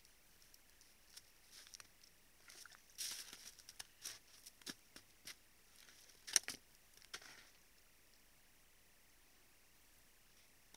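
Young moose feeding at a salt lick and shifting their hooves in snow close to the trail camera: quiet, scattered crunches and clicks. They cluster through the middle and are loudest a little past six seconds.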